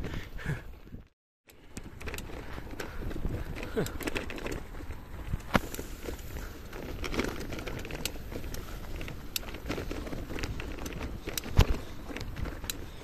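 Road bike riding over a bumpy dirt and grass track: steady rolling and wind noise with scattered clicks and knocks as the bike rattles over the ruts.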